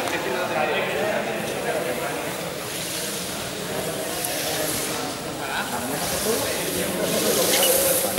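Indistinct chatter of a group of students talking over one another in a gym hall, with no single voice standing out.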